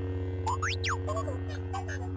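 Lightsaber hum sound effect: a steady low electric hum, overlaid about half a second in by quick rising and falling whistle-like glides and a few short chirps.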